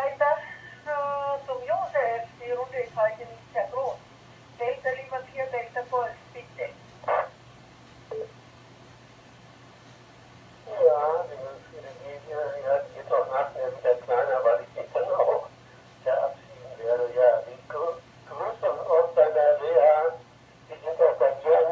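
Speech received over an amateur radio repeater link, with the thin, narrow sound of radio audio from a transceiver's loudspeaker and a steady low hum underneath. The talk pauses for about three seconds near the middle.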